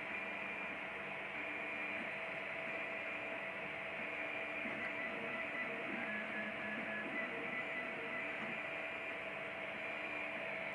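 Wanhao Duplicator i3 3D printer running a print: a steady fan hiss under short stepper-motor tones that keep changing pitch as the axes move.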